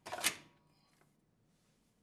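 A plastic soap refill bottle brushing against a plastic dispenser bottle support as it is pushed up into place: one short scrape in the first half second, then near silence.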